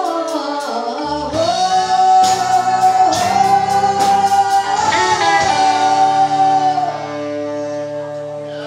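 Live rock band with two women singing one long held note over electric guitar and drums. The note breaks briefly about five seconds in and ends about seven seconds in, and the band's chord rings on, a little quieter.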